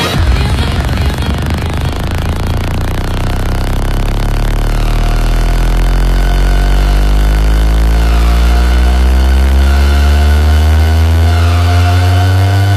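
Electronic dance-mix build-up: a stack of tones climbs slowly and steadily in pitch over about ten seconds above a heavy, sustained bass. It is an engine-like rising sweep effect.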